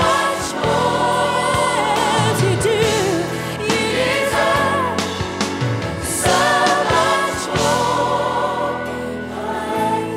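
Live gospel worship music: a woman's lead vocal, with vibrato on held notes, sung over a choir and a band with electric guitar.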